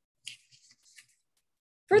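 Near silence in a gap in speech, broken by one short faint click about a quarter-second in and a few tiny soft ticks just after; speech resumes at the very end.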